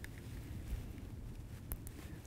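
Two small clicks about a second apart as a flash-sync trigger is slid onto a camera's hot shoe, over a faint low wind rumble.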